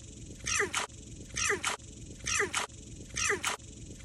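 American bullfrog giving repeated distress calls while it is held in a hand: short squawking cries about once a second, each falling in pitch.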